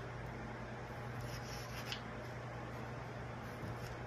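Pencil drawing on construction paper: a few faint scratching strokes as small door outlines are marked, over a steady low hum.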